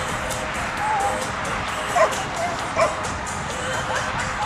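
A small dog giving two short, high yipping barks, about two and three seconds in, over background music with a steady beat.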